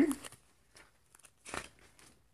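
Paper pages of a ring binder being turned: a short dry rustle about one and a half seconds in, with a few faint ticks of paper around it.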